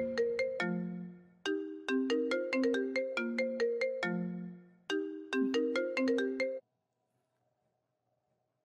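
Smartphone ringtone for an incoming call: a bright plucked-note melody played in repeated short phrases. It stops suddenly about six and a half seconds in, when the call is answered.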